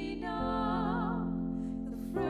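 Slow keyboard accompaniment holding sustained chords, changing chord about half a second in, with a wavering higher melody line over them.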